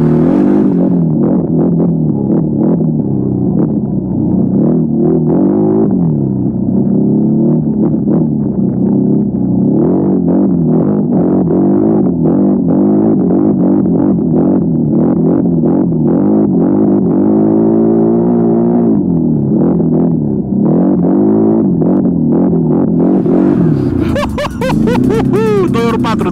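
ATV engine and exhaust picked up by a microphone placed to capture the exhaust, running steadily under way, its pitch rising and falling over and over as the throttle opens and closes. The sound is dull, with little treble.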